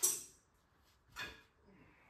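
Small steel washers and bolts set down on a workbench: a clink at the start that fades over about half a second, and a second clink about a second later.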